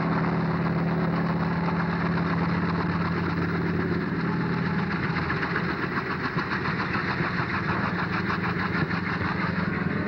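Kaman HOK-1 helicopter running, its Pratt & Whitney Wasp radial engine giving a steady hum. From about halfway through, a rapid regular beat from the intermeshing rotors joins in.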